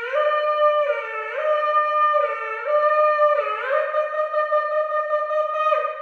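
A ram's-horn shofar blown in one long blast that breaks down and back up between two notes several times, combining the different styles of shofar calls. The blast ends near the end.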